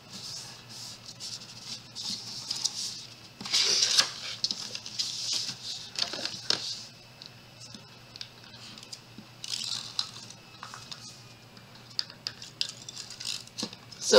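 Paper rustling and sliding as hands fold an envelope's flaps and smooth the creases flat. It comes in short scratchy bursts with quieter gaps between them.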